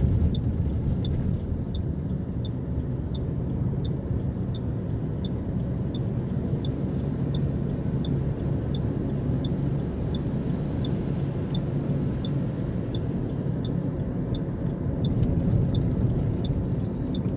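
Steady low road and engine rumble heard from inside a moving vehicle on a highway. Over it comes a light, high-pitched tick repeating evenly about three times a second.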